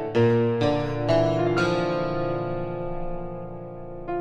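Piano music: a short run of notes and chords struck about twice a second, then a chord left to ring and slowly fade over the last two seconds.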